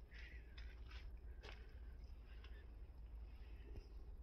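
Near silence: faint rustles and a few small clicks from someone moving about and handling the camera, with one sharper click about a second and a half in, over a low steady rumble.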